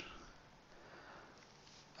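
Near silence: faint room tone with a soft, short hiss in the first second and a half.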